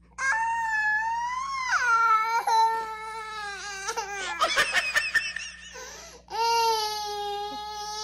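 A toddler crying: a long wail that drops in pitch near its end, then choppy, broken sobbing, then a second long, steady wail near the end.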